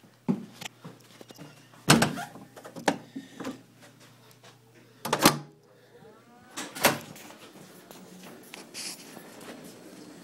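Footsteps and the knocks of a heavy door being pushed open and swinging shut, with loud thuds about two and five seconds in and a brief creak after the second. A low steady hum runs under the first half.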